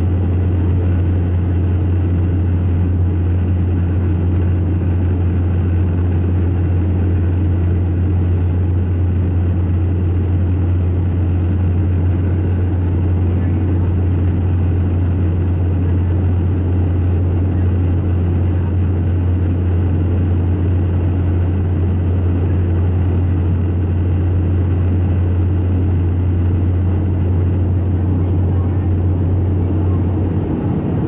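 Cabin noise in a McDonnell Douglas MD-88 near its rear-mounted Pratt & Whitney JT8D turbofans during descent: a steady, loud low drone with airflow hiss over it.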